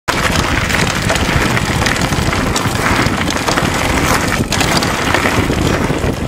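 Wind buffeting the microphone of a camera mounted on a downhill mountain bike's frame, over the steady rumble and irregular knocks of the tyres rolling down a rough gravel and dirt trail.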